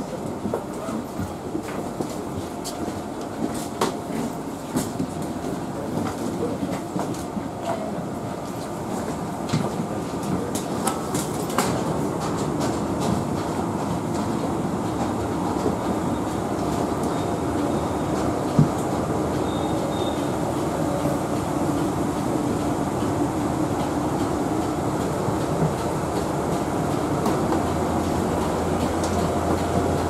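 Steady mechanical rumble inside an airport jet bridge, with scattered footsteps, clicks and knocks as a queue of boarding passengers shuffles forward, one sharper knock about two-thirds of the way through. A steady low hum comes up near the end as the aircraft door is reached.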